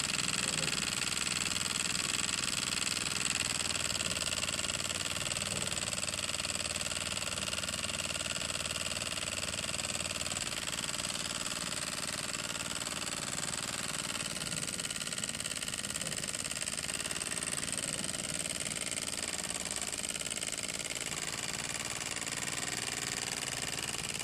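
Microcosm M88 miniature walking-beam steam engine running fast and steady: a rapid, even clatter of its piston, slide valve and flywheel with puffs of exhaust steam. It is running a little faster than ideal and grows slightly quieter over the stretch.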